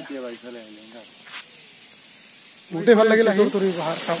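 A man talking, over a steady hiss; the voice and hiss get louder about two and a half seconds in.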